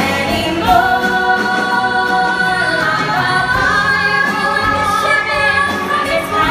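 Two women singing a duet with live piano and orchestral accompaniment, holding one long note through most of it.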